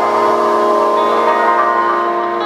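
Live band music: a held chord of several steady tones rings on with no drum beat.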